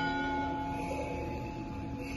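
Church bell ringing on after a stroke just before, its tone held steady and slowly fading over a low steady hum.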